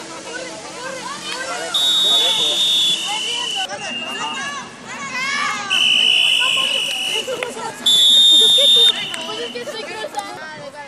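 A shrill whistle blown in three long, steady blasts, the first about two seconds in, the last and shortest near the end, over the shouting of players and onlookers.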